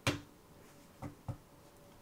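Deck of playing cards being handled and cut on a close-up mat: a sharp click at the start, then two softer clicks about a second in.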